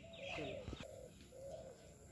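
Dove cooing faintly in the background: a few low, arching coos.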